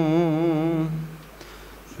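A man's chanting voice holding a long note with a slow waver, which trails off about a second in; after a short pause for breath the chant starts again at the very end.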